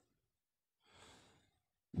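A person's faint in-breath, about a second in and lasting about half a second; otherwise near silence.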